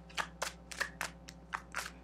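A deck of tarot cards being shuffled by hand, the cards giving a quick run of light snaps, about four or five a second.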